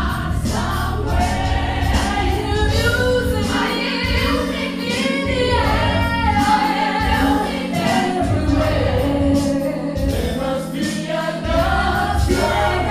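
Gospel choir singing live, with a band's bass line pulsing underneath that drops out for moments now and then.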